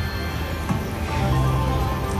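Electronic music and tones from a Kitty Glitter video slot machine as the reels spin, over busy casino background noise, with one short click under a second in.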